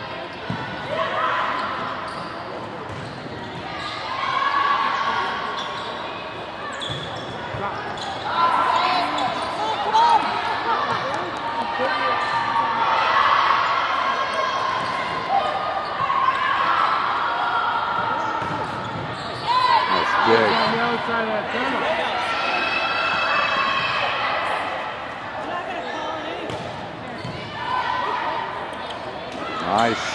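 Volleyball rally in a gym: players and spectators call out and shout throughout, with a few sharp thumps of the ball being hit.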